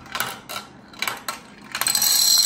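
A marble rolling and clicking down a plastic marble-run track, with a few separate knocks. Near the end, plastic dominoes start toppling in a quick run of clatters.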